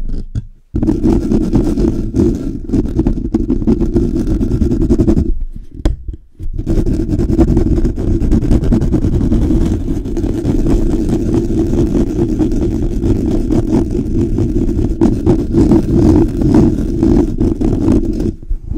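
Fingers rubbing and scratching fast on a Blue Yeti microphone's grille, heard right at the capsule as a loud, dense, rough rumble. It starts about a second in and breaks off for about a second around the middle before carrying on.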